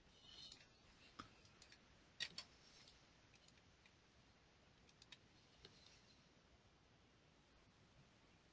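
Near silence broken by a few faint computer mouse clicks, two of them in quick succession about two seconds in and a few more around five seconds.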